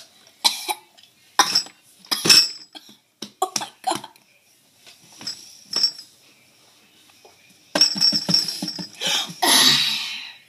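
A child coughing and gagging at the taste of a canned-dog-food-flavoured jelly bean: several short coughs over the first six seconds, then a longer voiced gag and a loud cough near the end.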